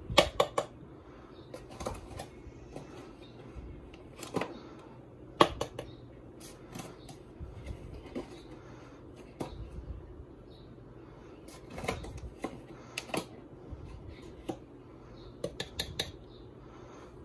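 A plastic measuring spoon clicks and knocks against a plastic mixing bowl as tablespoons of flour are scooped and tapped in. The sharp clicks are scattered and irregular, loudest at the very start and about five seconds in.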